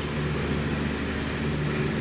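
Water poured from a plastic bottle onto an untreated felt wheel-arch liner, soaking into the felt, over a steady low mechanical hum.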